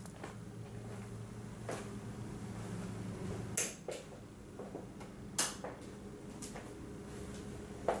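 Light switches being clicked off: a few sharp clicks and knocks, the two loudest about three and a half and five and a half seconds in, over a faint steady hum.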